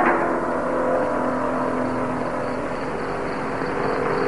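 Film soundtrack: a few long held low tones over a steady rushing hiss, after a fuller chord of many held notes fades out at the very start.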